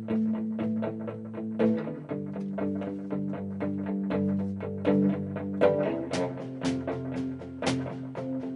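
Electric guitar playing a picked instrumental intro of repeated notes, about four a second, changing chord about two and six seconds in. Sharp drum hits join about six seconds in, roughly two a second.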